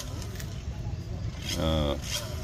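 Low, steady outdoor background rumble, then a short voiced "ah" about a second and a half in.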